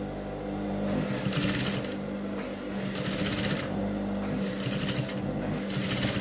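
Sewing machine top-stitching a pocket on cotton twill, running in four short spurts of rapid needle strokes with pauses between, over a steady motor hum.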